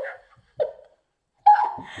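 A woman laughing: a short laugh about half a second in, then a louder burst of laughter near the end.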